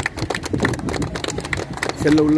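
A crowd clapping their hands: many sharp claps overlapping closely.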